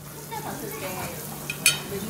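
Restaurant dining-room ambience: indistinct background chatter over a steady hiss, with a single sharp clink of tableware about one and a half seconds in.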